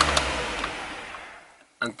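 Honda CR-V engine idling, heard from inside the cabin as a steady hiss that fades away to near silence over about a second and a half. The tachometer shows the idle down near 1,000 rpm.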